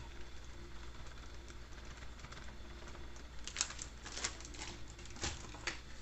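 Faint, scattered clicks and crinkles of a plastic flour bag and a small cup being handled as a cup of flour is measured out, mostly in the second half, over a low steady hum.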